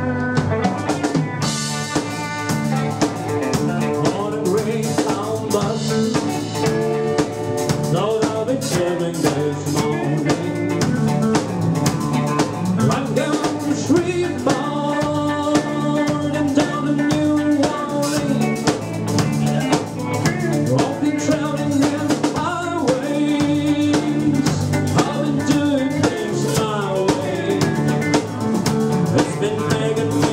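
Live country-rock band playing an instrumental passage: electric guitars and acoustic guitar over a drum kit keeping a steady beat, with the lead guitar sliding and bending notes.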